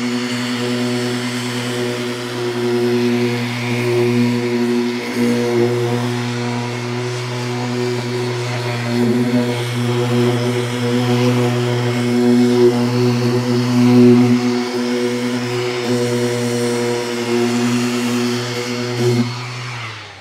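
A handheld orbital sander with 220-grit paper runs steadily against body filler on a van's side panel, giving a constant droning hum. It winds down and stops shortly before the end.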